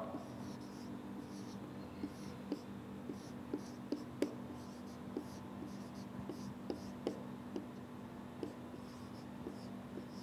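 Marker pen writing on a whiteboard: irregular light taps and faint high scratches as the strokes are drawn, over a steady low room hum.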